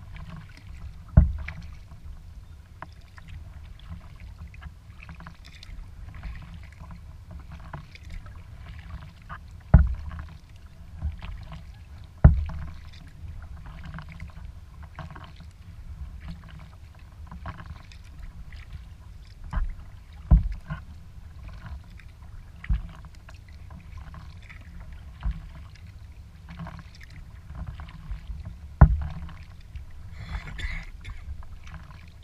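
Kayak being paddled on calm water: paddle strokes and dripping splashes over a steady low rumble, with several sharp hard knocks on the kayak's hull scattered through.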